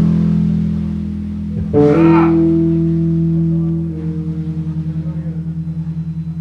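Electric guitar and bass through amplifiers: a loud chord struck and left ringing, a second, higher chord struck about two seconds in, and from about four seconds in the held notes pulse evenly about five times a second, like a tremolo effect.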